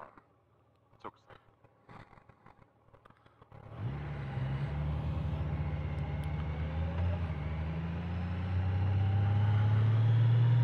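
Near silence for about three and a half seconds, then the 2019 Honda Gold Wing Tour's flat-six engine and wind noise come up as the motorcycle pulls away from a stop: a steady low hum that grows louder toward the end.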